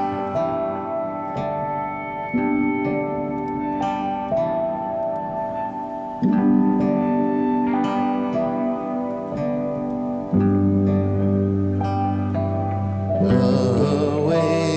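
A multitrack music mix playing back from a recording session, with held chords that change every second or two. A deep bass note comes in about ten seconds in.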